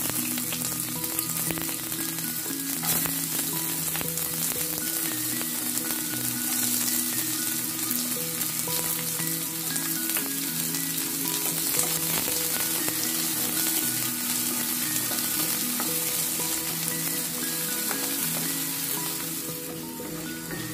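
Chopped onions, green chillies and garlic sizzling steadily in hot oil in a nonstick pan, with occasional light spatula scrapes as they are stirred. Soft background music plays under it.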